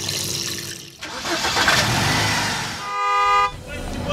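Street traffic noise, with a car horn sounding once, briefly, about three seconds in.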